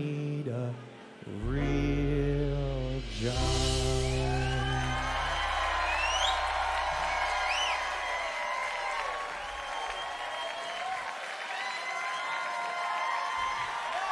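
A live funk band ends a song. A last sung phrase gives way to a held final chord with a long low bass note that stops about eight seconds in. Meanwhile the audience breaks into applause, cheering and whistles, which carry on after the band stops.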